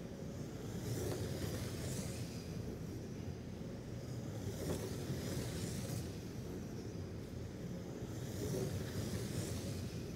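RC Slash short-course trucks lapping an indoor oval: a steady low hum of running cars, with the high sound of trucks swelling as they pass about two seconds in and again near the end.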